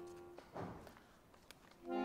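Accordion holding a soft chord that dies away within the first half second, then a short soft rustle and near silence; a new accordion chord swells in just before the end, leading into the lullaby.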